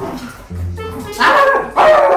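A woman imitating a dog's bark: two loud barks in the second half, over background music.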